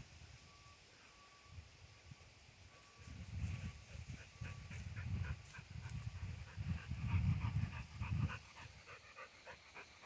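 A dog panting quickly, faint at first and louder from about three seconds in, over rough low rumbling.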